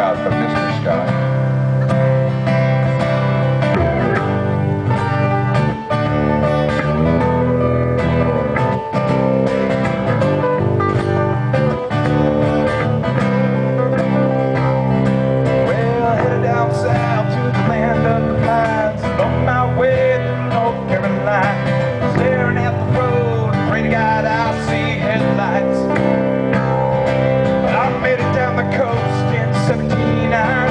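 Acoustic guitars playing a cover song live, with a man singing lead over them.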